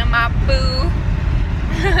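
Steady low rumble of car cabin noise, road and engine heard from inside a moving car, under a woman's short bits of voice and a laugh near the end.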